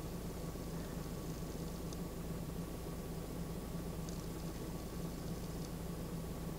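Steady low hum, without change, inside the cabin of a parked 2001 VW Golf Mk IV.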